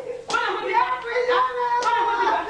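Two sharp slaps by hand on a person, about a second and a half apart, over a woman's raised, wailing voice.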